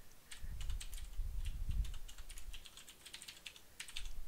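Typing on a computer keyboard: quick runs of keystroke clicks entering a terminal command. A low rumble sits under the clicks from about half a second to two seconds in.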